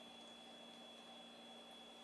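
Near silence: room tone, a faint steady hiss with a thin, steady hum.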